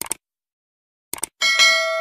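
Subscribe-button sound effects: a quick double click at the start, two more clicks a little over a second later, then a bright notification-bell ding that keeps ringing.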